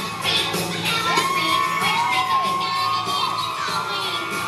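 Audience cheering and whooping, with several long drawn-out shouts rising and falling in pitch from about a second in, over backing music.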